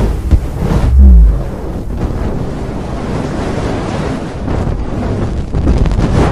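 Sound effects for an animated logo: a deep boom about a second in, then a steady noisy rush like wind that swells again near the end.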